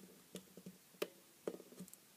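A few faint clicks and taps, the loudest about a second in: metal multimeter probe tips knocking and scraping against the charger's spring contact and the cell's terminal while a good connection is sought.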